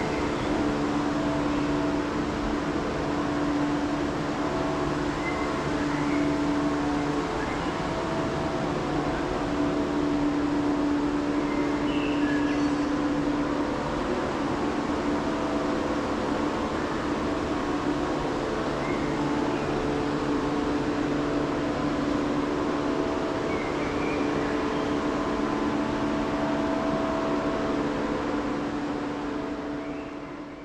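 Steady background noise of a large indoor airport terminal hall: a constant hum with held droning tones that swell and drop back, and a few faint short chirps. It fades out near the end.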